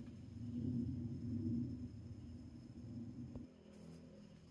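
Quiet room tone: a faint low hum, with a single light click a little before the end.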